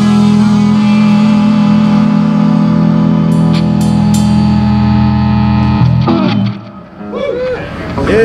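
Live rock band of electric guitars, bass and drum kit holding one long ringing chord with a few cymbal crashes, stopping about six seconds in. Whoops and shouts follow near the end.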